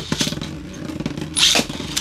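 A Beyblade spinning top whirring on a plastic stadium floor with a fast buzzing rattle. About one and a half seconds in, a second Beyblade is launched with a sharp rip of the launcher and lands with clicks.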